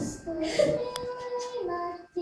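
Children singing a melody, each note held steady before moving to the next.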